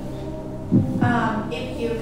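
Game-show suspense background music: a steady synth drone with a low, heartbeat-like throbbing pulse, a deeper thump about three quarters of a second in.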